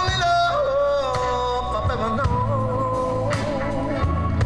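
Live band playing a slow song: a male lead vocalist sings long held notes that waver and bend, over electric guitars, keyboards, bass and drums.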